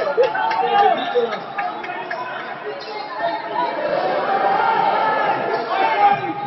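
Indistinct chatter and voices of spectators, echoing in a large indoor sports hall.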